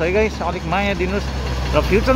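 A man talking over a steady low rumble of vehicles passing on the road.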